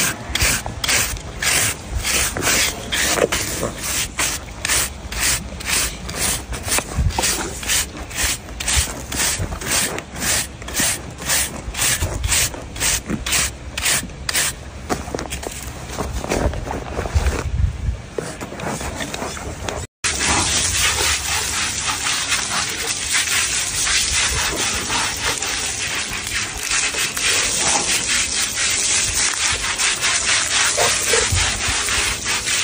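A hand rasp filing an African elephant's foot pad and toenails in regular scraping strokes, about two a second, for the first two-thirds or so. After a break about twenty seconds in, a steady rushing hiss of water spraying from a hose onto the elephant.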